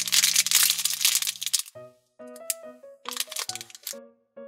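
A clear plastic candy bag crinkling in the hands for about a second and a half, over background music. After that only the music is heard, a simple melody of separate notes.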